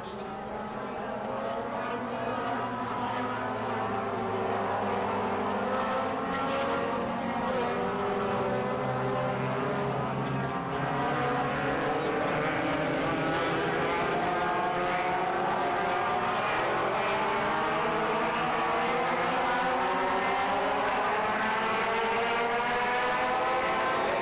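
A steady engine drone that grows louder over the first few seconds, its many pitch bands slowly rising.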